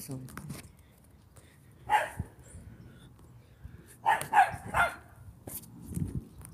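A dog barking: a single bark about two seconds in, then a quick run of three barks between about four and five seconds.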